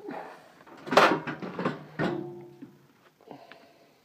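Hinged stove-top cover of a motorhome gas range being lifted open: a loud clatter about a second in, then a second clank near two seconds with a brief ringing tone.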